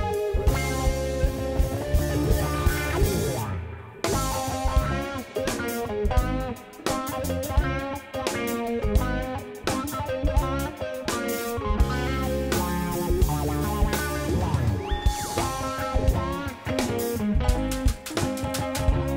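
A live instrumental lo-fi jazz band plays: clean electric guitar, electric keyboard, electric bass and drum kit in a steady groove. The music drops out briefly about four seconds in, then comes back in.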